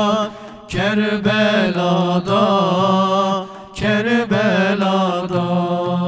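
Several men singing a Turkish ilahi in unison with long, ornamented held notes. The singing breaks off briefly twice, just after the start and a little past the middle.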